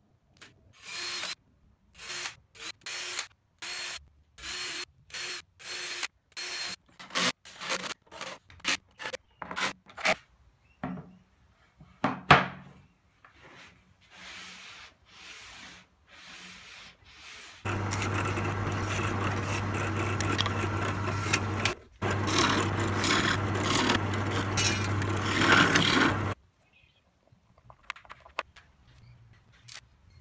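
Cordless drill driving screws in a string of short bursts into plastic chopping-board runners on a chipboard sled, followed by a few quieter handling knocks. Near the end a louder machine runs steadily for about eight seconds, with one short break.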